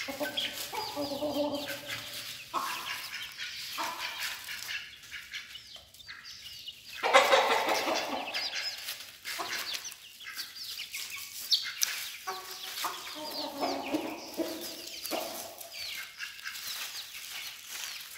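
A flock of chickens clucking and calling while they peck at grain and bread, with a louder, harsher burst of calling about seven seconds in.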